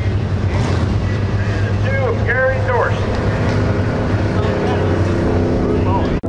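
Street stock race car engines running steadily, with a person's voice briefly heard over them about two seconds in.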